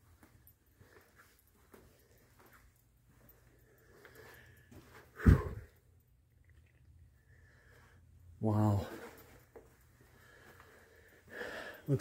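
Quiet room tone broken by a person's breathy vocal sounds: a sudden loud puff of breath on the microphone about five seconds in, and a short hummed voice sound about eight and a half seconds in.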